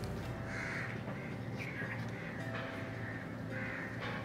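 A crow cawing four times, about a second apart, over a steady low background hum.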